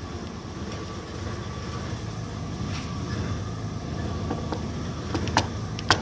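Car engine idling steadily, with a few sharp clicks near the end.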